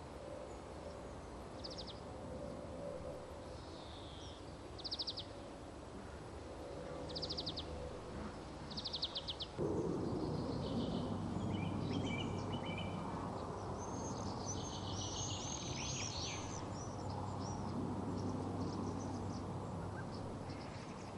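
Birds chirping over steady outdoor background noise: short high trills every second or two, then a denser run of sweeping chirps. About ten seconds in, the background noise suddenly becomes louder.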